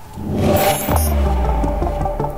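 News-programme transition music: a rising whoosh swells for under a second into a deep bass hit about a second in. A rhythmic percussive music bed then starts under it.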